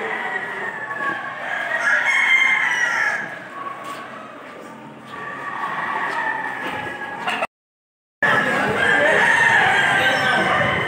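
Gamecocks crowing, several long calls one after another. The sound cuts out completely for under a second near the end, then resumes.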